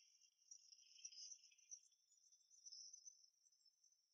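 Near silence, with faint, steady, high-pitched insect chirring.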